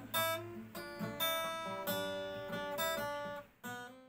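Acoustic guitar playing the closing chords of the song after the voices stop: about six strums, each left to ring and fade, the last one near the end.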